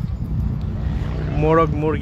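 Wind rumbling on the phone's microphone, with a brief voice-like call starting about a second and a half in.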